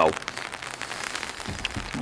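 Rain pattering on an umbrella held overhead, a dense run of small drop ticks.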